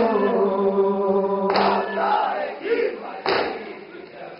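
A male noha reciter sings a long held note through a microphone and loudspeakers, then a group of male mourners answers in chorus. Two sharp, loud slaps come about a second and a half and three seconds in, which fit matam: mourners striking their chests in time with the noha.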